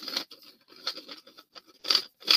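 3D-printed plastic motor mount being screwed into the threaded end of a 3D-printed rocket body tube: irregular scraping and rasping of plastic threads as it is twisted in, in short strokes, the loudest near the end.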